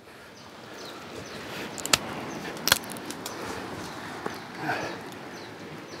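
Rustling and scraping of a person clambering down through dense bush with a phone in hand: branches and clothing brushing the microphone, footsteps, and two sharp knocks about two and nearly three seconds in.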